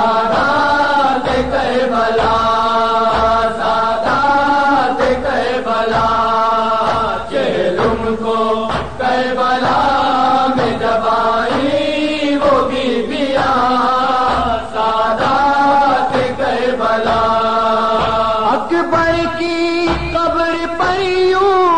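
A noha, a mourning lament for Imam Hussain, chanted in long held, sliding lines with short breaths between phrases, carried over horn loudspeakers above a marching crowd.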